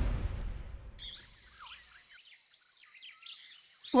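Faint cartoon jungle ambience from the anime soundtrack: scattered short bird chirps over a steady thin high hum. A low rumble fades out in the first second.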